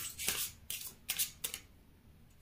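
A tarot deck being shuffled by hand: a quick run of about five papery swishes of cards that stops a little before the end.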